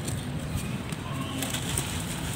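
Dry mud chunks crumbled in the hands, a faint dry crackle with bits and dust falling. A bird is cooing in the background.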